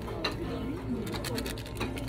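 Restaurant background: a steady low hum with faint voices, and a few light clinks of tableware and utensils.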